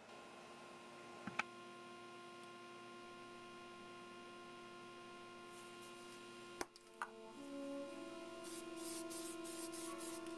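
Soft background music with long held notes. Near the end come several short hissing bursts from a Krylon Short Cuts aerosol spray paint can, with a few sharp clicks earlier.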